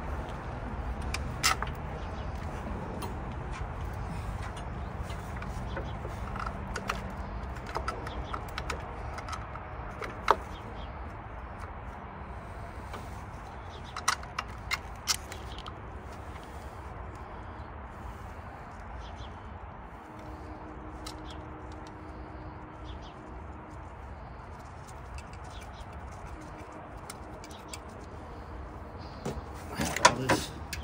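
A few sharp clicks and clinks of parts and hardware being handled in a car's engine bay, spread out over the stretch, over a steady low outdoor rumble.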